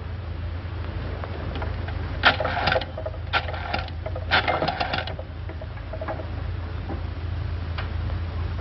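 Rotary telephone being dialed: three runs of rapid clicking as the dial is turned and spins back, about a second apart.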